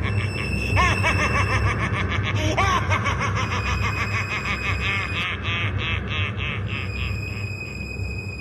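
A man laughing, a long run of quick snickering pulses, over a low steady drone.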